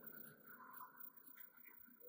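Near silence: a pause between spoken phrases, with nothing audible above the quiet room tone.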